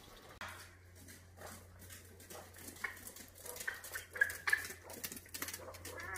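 A young peachick on tiled stairs: light, scattered clicks of its feet on the hard tiles, with a few faint short peeps in the middle.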